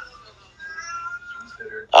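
A faint, drawn-out high-pitched cry lasting about a second, in a pause between a man's words.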